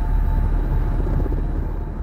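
Deep, loud rumbling sound effect of an animated intro logo sting, with the tail of a held musical chord fading under it. It dies away near the end.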